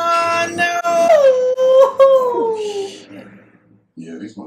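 A long, high wailing cry from one voice, its pitch sliding slowly down and fading out about three seconds in.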